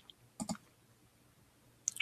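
A few faint clicks in near quiet: two close together about half a second in, and one more just before the end.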